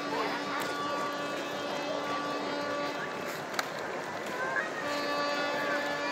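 Outdoor ambience: a steady noise with a faint hum of held tones that drops out for a couple of seconds midway, faint distant voices, and one sharp tick about three and a half seconds in.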